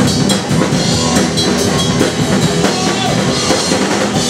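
Live rock band playing loudly: a drum kit driving a steady beat under electric guitar and bass.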